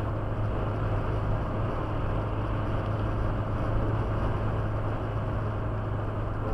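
Cabin noise of a car cruising at about 100 km/h, heard from inside: a steady low drone with road noise that does not change.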